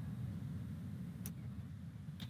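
Low, steady hum of background noise on a video-call line, with one faint click about a second in.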